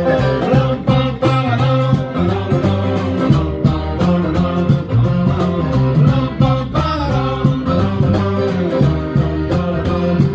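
Live acoustic band music: a steel-string acoustic guitar strummed in a steady rhythm over bass guitar and hand percussion.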